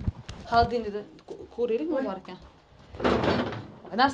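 Brief snatches of women's voices, then about three seconds in a short rushing noise as a refrigerator door is pulled open.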